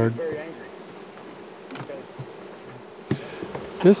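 Honey bees buzzing in the air around open hives, a steady faint hum, with a couple of faint knocks.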